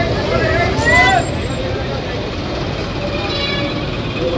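Steady low rumble of bus engines running, with a few voices talking over it in the first second or so.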